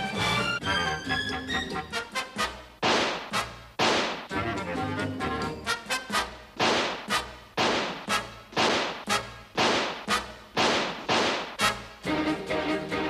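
Orchestral music from a stage or TV soundtrack. It opens with a brass phrase, and from about three seconds in it is broken by a long series of sharp, loud hits, roughly one or two a second, each ringing out briefly.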